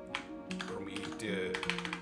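Computer keyboard typing, a scattered run of key clicks, over background music with soft held notes.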